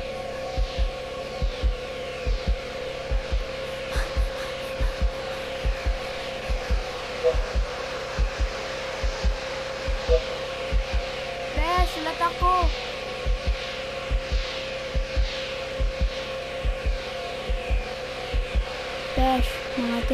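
Electronic horror-film underscore: a steady drone with a low, regular throbbing pulse, and repeated falling high swishes over it.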